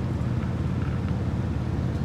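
Sightseeing boat's engine running steadily at cruising speed, a low even hum with light water and wind noise over it.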